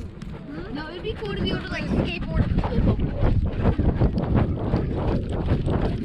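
Husky running with a harness-mounted action camera: fast, irregular thudding of her paws and the jostling camera, with wind on the microphone. It starts about two seconds in and grows louder, after a short stretch of voices.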